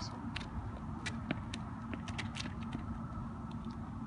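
Outdoor street ambience: a steady low rumble of traffic with scattered light clicks.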